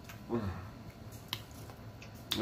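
A man eating pecan pie: a short hummed "mmm" of enjoyment near the start, and a few sharp mouth clicks and smacks as he chews.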